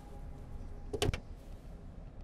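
Car's rear passenger door being shut, one solid thud about a second in.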